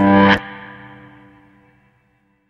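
Background music with guitar stops abruptly under half a second in. Its last chord rings on and fades away.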